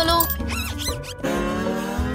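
Background music with a short, high squeaky comic sound effect about half a second in, followed by a long pitched tone gliding slowly upward.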